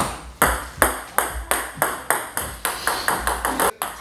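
Table tennis ball bouncing over and over with sharp clicks, the bounces coming faster and faster as it settles.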